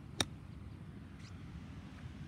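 A golf wedge striking a ball off a fairway lie: a single sharp click about a fifth of a second in, on a pitch shot played with the shaft leaned back to use the club's bounce. A low steady outdoor background follows.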